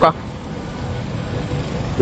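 Steady hum of city street traffic, cars running in the background.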